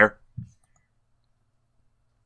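A man's voice trailing off at the end of a sentence, a brief faint low sound about half a second in, then near silence.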